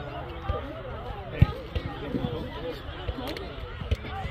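Children's voices chattering and calling on the field, with several dull thuds of soccer balls being kicked on grass; the loudest thud comes about one and a half seconds in.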